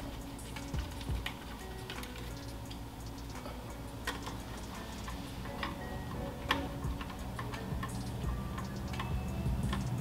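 Scattered small clicks, a second or more apart, from a hand screwdriver turning the four-millimetre screws that fasten a microscope stage, over faint background music.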